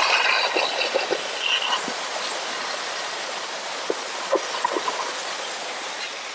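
Steam cleaner's single-hole nozzle hissing steadily as it blasts steam into a car's center console and cup holder to loosen dirt, with a few faint ticks from spattering water.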